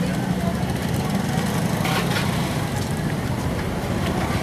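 Busy street with motorbike and car engines running close by, a steady low hum under the mixed voices of people around.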